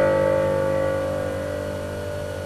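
Closing piano chord of the song's accompaniment ringing on and slowly fading away over a steady low hum.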